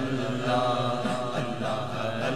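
Male voices chanting a naat: a lead reciter's held, wavering melody with backing voices chanting alongside.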